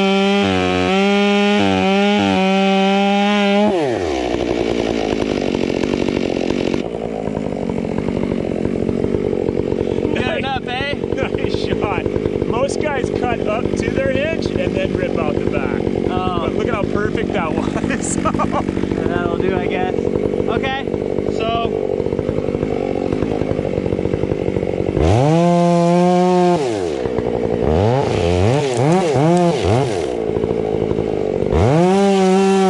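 Large chainsaw boring a plunge cut into a fir trunk to set the hinge wood. It revs high at first, then drops sharply in pitch as the bar sinks into the wood, and runs under load with a wavering note. About 25 seconds in it revs up again briefly before pulling back down into the cut.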